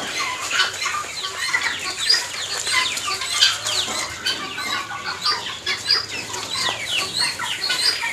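A flock of young Light Brahma chickens peeping, with many short, high, falling chirps overlapping one another.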